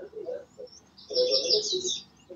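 A bird chirping in a quick, wavering trill, loudest in the second half, picked up through a participant's microphone on the video call.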